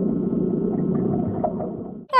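A low, sustained droning sound effect that fades slightly near the end.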